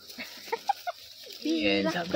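Chicken clucking: a few short clucks, then a louder, longer call near the end.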